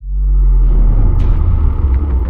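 Sudden loud, deep rumble that starts at once and holds steady, with a few faint high ticks in its second half. It is the produced sound effect opening an outro.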